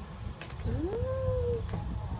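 A single drawn-out pitched vocal sound, rising at the start and then held for under a second, about halfway through, with a couple of faint clicks.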